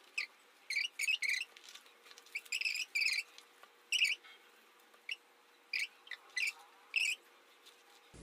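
Scissors snipping paper: about a dozen short, sharp snips at irregular spacing, some in quick runs of two or three.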